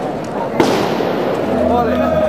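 Crowd chatter with a single sharp bang about half a second in, its hissing tail fading over about a second; music starts near the end.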